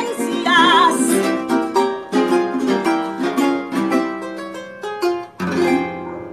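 Closing bars of a llanera song: a woman's held, wavering sung note just under a second in, then runs of quick plucked notes on the llanero harp, ending on a final chord about five and a half seconds in that rings out.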